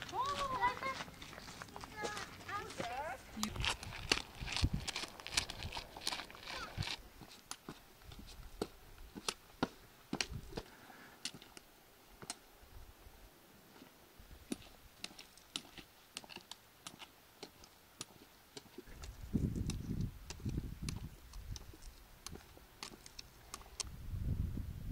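Footsteps and trekking-pole tips tapping on a rocky dirt trail, heard as irregular sharp clicks, with people talking briefly in the first few seconds. A low rumble comes in for the last five seconds.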